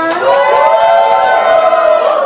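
A high-pitched voice in a long drawn-out cry that glides up and then holds one note, with a second voice layered beneath it.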